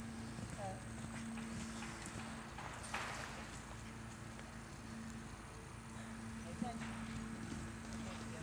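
Hoofbeats of a ridden horse moving over a dirt arena, with a steady low hum running underneath.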